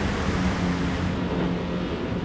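Water churning and sloshing in a crab boat's live crab tank over the steady drone of the boat's machinery. The sloshing is the sign of a slack tank: a failing pump has let the water level drop.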